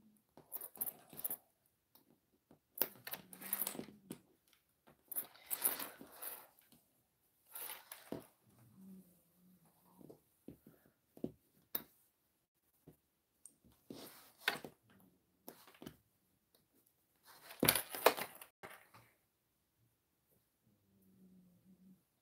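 Handling noise of a quilted fabric piece: intermittent rustling as the fabric is folded and smoothed, with a few small clicks from plastic sewing clips. The loudest rustle comes just before three quarters of the way in.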